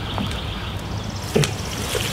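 Steady outdoor background hiss with a faint, evenly pulsing insect trill, and a single light knock about a second and a half in.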